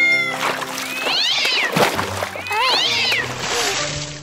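Cartoon kitten meowing twice, short rising-and-falling calls, over light background music.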